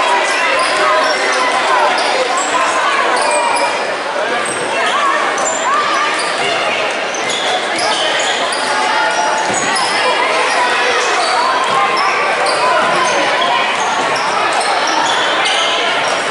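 Basketball game sounds in an echoing gym: a ball dribbling on the hardwood court, sneakers squeaking in short high chirps, and a steady jumble of indistinct voices from players and spectators.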